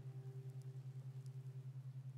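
Faint background drone under a hypnosis track: a low tone pulsing evenly about eight times a second, with softer steady tones above it.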